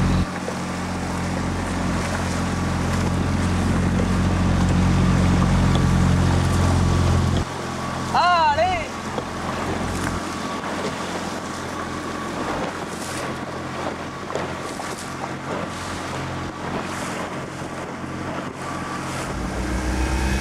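Motorboat engine running steadily under wind and water noise; about seven seconds in its low drone drops sharply and stays lower, building again near the end. A brief high wavering call sounds about eight seconds in.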